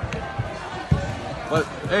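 Two dull thumps about half a second apart, the second louder, from wrestlers' bodies hitting a foam wrestling mat, over the chatter of a gym crowd.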